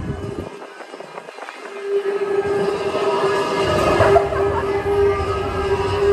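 Expedition Everest roller coaster train running along its track, quiet at first. A steady humming tone comes in about two seconds in and holds.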